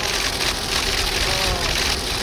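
Steady street noise with faint voices of people talking in the background.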